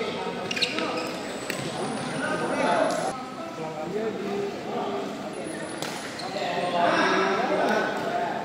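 Badminton doubles rally: a few sharp racket strikes on the shuttlecock, with players' voices calling out between them.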